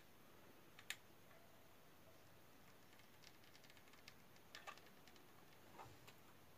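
Near silence, with a few faint clicks as a hot glue gun is worked to glue a crocheted bow down: one about a second in and a short cluster near the end.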